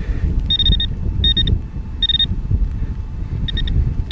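Metal detecting pinpointer probe beeping in short high-pitched bursts, some pulsing rapidly, as it is swept through loose soil over a buried coin.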